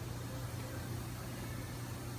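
Steady low hum with a faint even hiss and no distinct knocks or clicks: constant background machine noise of a workshop.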